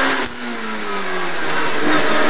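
Citroën Saxo rally car's four-cylinder engine heard from inside the cabin, working hard through a corner: its pitch drops over the first second and a half, then holds steady as it grows louder under acceleration, with a thin high whine above it.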